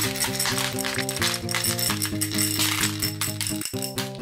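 Small hard-shelled candies pouring out of a plastic capsule and rattling onto a heap of candies in a plastic toy tub, a dense clicking that stops shortly before the end. A simple children's tune plays throughout.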